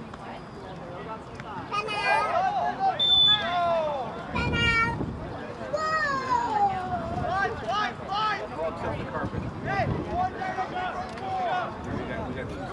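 Players shouting and calling to each other across an outdoor soccer pitch, several raised voices overlapping, loudest between about two and five seconds in.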